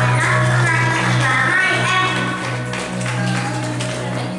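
A Yamaha PSR-series electronic keyboard holds a sustained chord with a steady low bass note, closing a song. A child's singing voice carries over it for the first two seconds or so and then drops away, with a few light taps scattered through.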